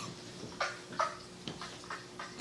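Stifled laughter: three short, breathy, squeaky bursts about half a second apart, held back and muffled.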